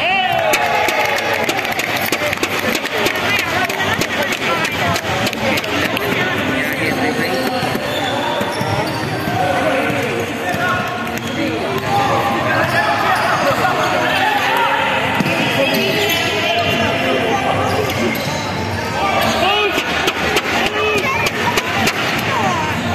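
A basketball being dribbled and bounced on a hardwood court during live play, with players' voices calling out, echoing in a large sports hall.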